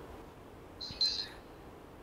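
A bird chirps once, briefly and high-pitched, about a second in, over faint room noise.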